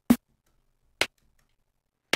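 Two short electronic drum-machine hits about a second apart, the first louder: CR-8000 drum-synth snare and rim presets being previewed one at a time.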